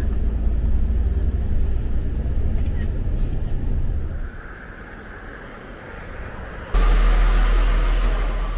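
Low, steady rumble of a moving bus heard from inside its cabin. It cuts away about four seconds in to a quieter hiss. Near the end a sudden loud rushing noise starts.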